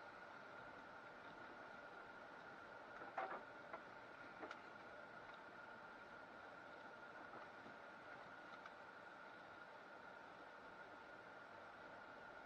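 Near silence: a faint steady high-pitched hum, with a few faint short sounds about three seconds in and again about four and a half seconds in.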